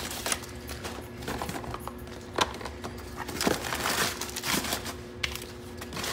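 Crumpled kraft packing paper crinkling and rustling as it is pulled out of a cardboard shipping box, with irregular taps and clicks as small cardboard product boxes are handled.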